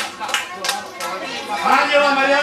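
Chatter of several voices in a large hall, with a few sharp claps in the first second and a voice rising near the end.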